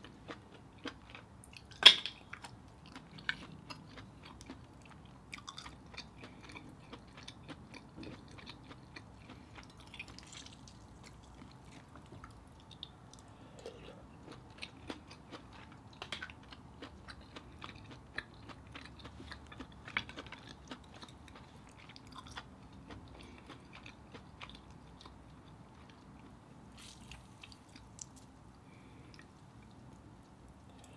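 Close-up chewing and mouth sounds of a person eating mussels dipped in butter sauce, with scattered small clicks and a sharp click about two seconds in.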